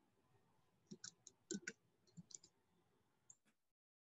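A handful of faint, sharp clicks at a computer, in a cluster about a second in, another about two seconds in and a single one near the end, over near silence.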